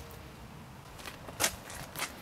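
Low, steady background noise with one short burst of noise, a brief scuff-like sound, about one and a half seconds in.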